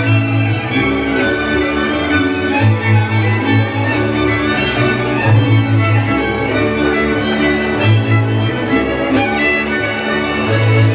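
A folk string band playing a tune: fiddles carry the melody over a bowed bass line of long, held low notes.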